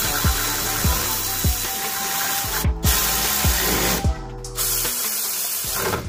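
Power tool running in three spells, with a hissing sound, as it tightens the bolts of a new rear wheel hub bearing assembly on a 2012 Chevy Equinox. Background music with a steady beat plays underneath.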